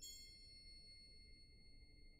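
A soft, high-pitched metal percussion note struck once, bell-like with several clear overtones, ringing on and slowly fading. This is a quiet passage of a wind ensemble's percussion section.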